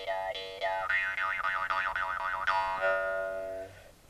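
Khomus (Yakut jaw harps) played together: a steady twanging drone with an overtone melody that dips in a regular rhythm, then warbles rapidly, then settles on one held note and stops shortly before the end.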